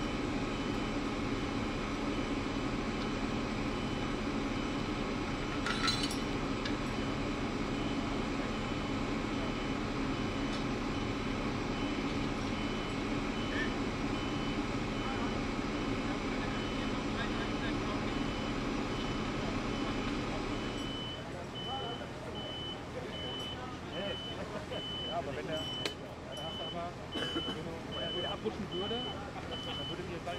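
A large diesel engine running steadily, stopping abruptly about two-thirds of the way through, with a vehicle warning beeper pulsing in a steady series of high beeps. Once the engine is gone, distant voices can be heard.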